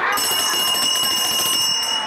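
A bright bell-like ringing tone starts suddenly just after the start and holds steady for nearly two seconds.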